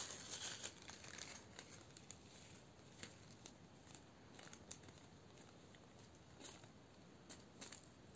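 Faint crinkling of a small plastic bag with scattered light clicks as diamond-painting drills are tipped into a plastic drill tray.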